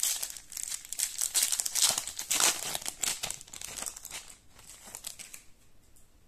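Foil wrapper of a Topps Bundesliga Chrome trading-card pack crinkling as it is torn open, a dense run of crackles that is loudest in the first three seconds and fades out near the end.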